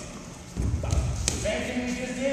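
Dull low thuds for about a second, starting about half a second in, with two sharp knocks among them, then voices in the background near the end.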